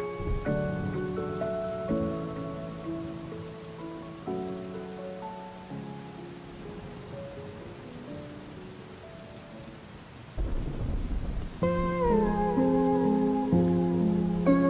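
Mellow lo-fi music playing over steady rain, its notes thinning out and fading. About ten seconds in a low rumble of thunder sets in, and the music comes back louder soon after.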